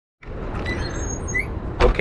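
Outdoor street noise: a steady low rumble of road traffic, with a few faint high squeaks and a brief knock just before the end.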